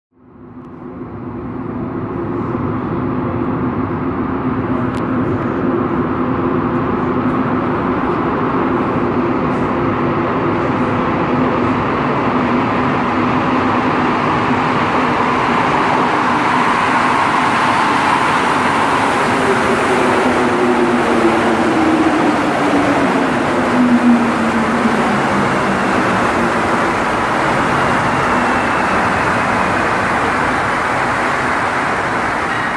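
Montreal Metro Azur (MPM-10) rubber-tyred train entering the station, a loud steady rumble of its running gear. Its motor whine falls in pitch as the train brakes to a stop.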